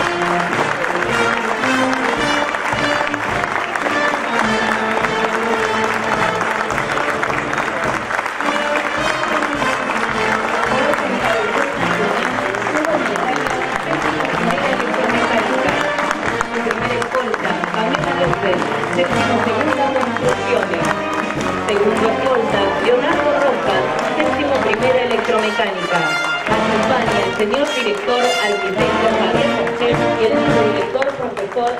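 March music with brass instruments playing while a crowd applauds.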